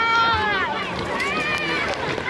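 Children's high voices calling out, two long drawn-out calls, with water splashing around them.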